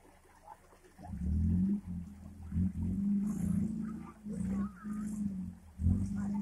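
Engine of a stuck off-road 4x4 revving in repeated bursts as it strains to climb over river rocks. It is loud and low, starts about a second in, and rises and drops several times.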